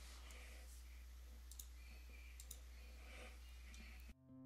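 Near silence over a steady low hum, with faint scratchy rubbing of a paper blending stump worked over colored pencil on paper, and a couple of small clicks.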